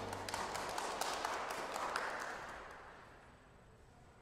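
Congregation clapping in a reverberant church, fading out over about three seconds, as the last of the organ's final chord dies away at the start.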